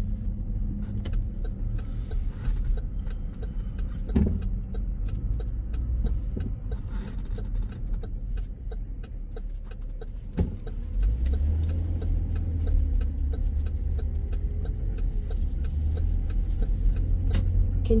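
Car cabin road noise: the engine and tyres give a steady low rumble, with two sharp knocks about four and ten seconds in. The rumble grows louder from about eleven seconds on as the car gets under way along the street.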